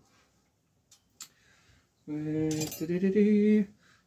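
A couple of faint light metal clicks as the headset parts are turned by hand on the fork steerer. Then a man hums two held notes, the second a little higher.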